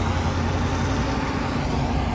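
Steady engine and tyre rumble of a vehicle driving on a highway, heard from inside the cabin as an even low hum.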